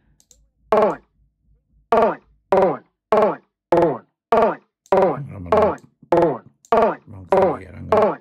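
A sampled male voice clip ("I'm sorry, Doc, I can't do it") retriggered by the Hammerhead Rhythm Station iPad drum machine's step sequencer. It is chopped into about a dozen short vocal stabs, each dropping in pitch, starting about a second in and coming roughly every half second.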